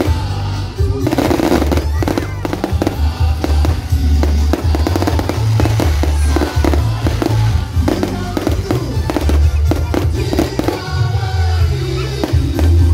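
Fireworks crackling, a rapid run of many sharp pops that starts about a second in and thins out near the end, over loud music with a heavy bass beat.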